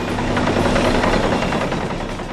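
John Deere crawler dozer pushing a blade-load of soil as it passes close by, its engine and tracks running loudly. The sound swells to its loudest around the middle and eases a little near the end.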